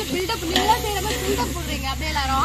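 A woman talking over a steady hiss and a low hum.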